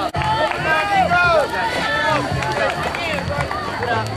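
Spectators shouting and cheering on passing cross-country runners, several raised voices overlapping in rising-and-falling calls.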